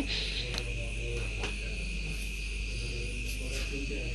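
A steady high-pitched cricket trill over the soft sizzle of koi and meni fish frying in hot oil, with a few small pops.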